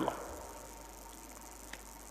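A man's voice ends a word just at the start, then there is only a faint, steady, high-pitched background noise under the pause in his speech.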